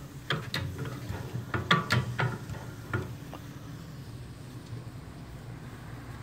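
Several light clicks and knocks over the first three seconds, then only a faint low steady hum.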